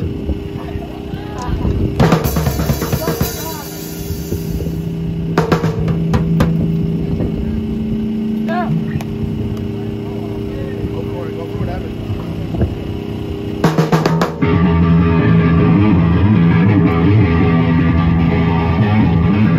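Live amplified rock band: a steady low note hums through the amps while the drummer strikes a cymbal and a few drums. About fourteen seconds in, a quick run of drum hits leads into the full band starting the song, louder, with drums, bass and electric guitar.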